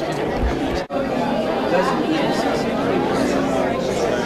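Many people talking at once in a large hall: a steady babble of overlapping voices with no single clear speaker, briefly cutting out about a second in.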